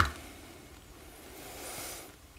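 Quiet room tone in a pause between speech, with a faint airy hiss, like a breath, swelling and fading near the end.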